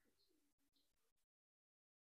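Near silence: faint room tone that drops to dead silence a little past a second in.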